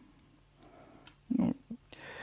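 Folding flipper knife with a titanium handle and ball-bearing pivot being closed by hand, the blade shutting with a faint click about halfway through. A brief low vocal sound from a man follows.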